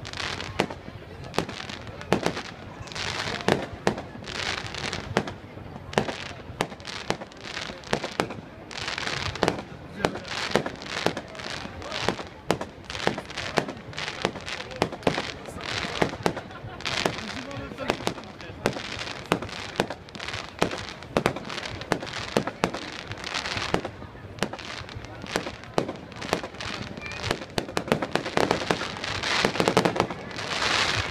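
Aerial fireworks display: a rapid, irregular series of sharp bangs from shells bursting overhead, several a second, with noisier stretches between the bangs.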